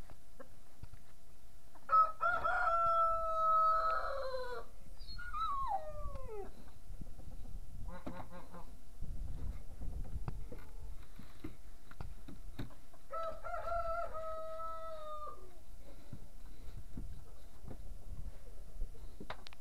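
A rooster crowing twice, about two seconds in and again about thirteen seconds in; each crow is a long held note that drops away at the end.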